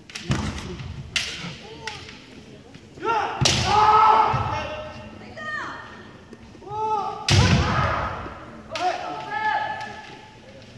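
Kendo fighters yelling kiai, drawn-out high-pitched shouts of about a second each, mixed with sharp stamps of the foot on the wooden floor and clacks of bamboo shinai. The loudest stamp-and-yell attacks come about three and a half and seven seconds in.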